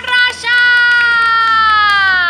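A voice says a short word, then from about half a second in holds one long sung note whose pitch slowly sinks.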